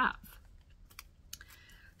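A few faint, sharp clicks, about a second in and again a little later, with light handling noise in a pause between words.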